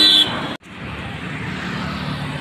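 Road traffic: a vehicle horn holding one steady high note that stops about a quarter second in, then, after an abrupt cut, the steady low noise of passing cars and motorbikes.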